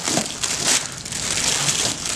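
Clear plastic packaging wrap crinkling and crackling continuously as hands pull and crumple it off a small box.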